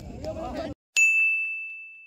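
Field voices cut off abruptly, then about a second in a single bright ding sound effect rings out, a clear high tone that fades slowly.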